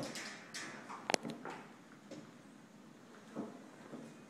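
Wooden cabinet section of a TV unit being turned on Reversica rotating hardware: a few knocks and clicks, the sharpest about a second in, and a softer thump about three and a half seconds in.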